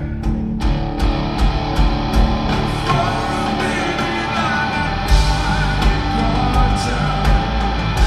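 Live rock band playing: electric guitar over bass and a full drum kit keeping a steady beat.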